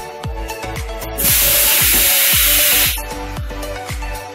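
A 20-litre PET jar blow-moulding machine lets out a loud hiss of compressed air that starts a little over a second in and cuts off about a second and a half later. Background dance music with a steady beat plays throughout.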